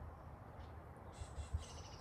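Faint birdsong: small birds chirping in quick repeated notes, clearest in the second half, over a low background rumble, with one soft low knock about halfway through.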